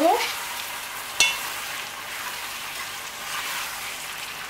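Ackee, vegetables and baked beans sizzling in a metal pot as they are stirred together, with one sharp knock of the stirring utensil against the pot about a second in.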